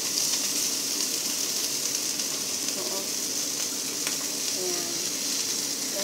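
Whole capelin shallow-frying in hot oil in a cast-iron skillet: a steady, bright sizzle, with a single light tap about four seconds in.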